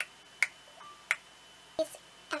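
A few sharp single clicks, roughly half a second apart, against a quiet room.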